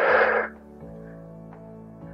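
A short, forceful breath out lasting about half a second at the start, the effort breath of an exercise repetition, followed by steady background music.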